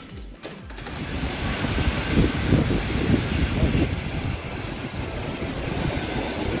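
Keys clicking in a door lock, then the noise of a railway platform as a suburban electric train pulls in: a loud, steady rumble with indistinct voices.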